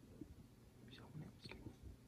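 Near silence: room tone with a few faint short clicks in a pause between a man's words.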